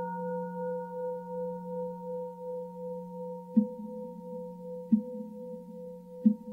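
Singing bowl ringing with a slowly fading, wavering tone. A little past halfway come two soft knocks about a second apart, each adding a low ring.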